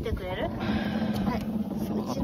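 A voice briefly at the start, then an engine running with a steady hum.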